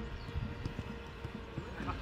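Footballers' boots thudding on artificial turf, with the dull knocks of the ball being passed and players' voices calling out near the end.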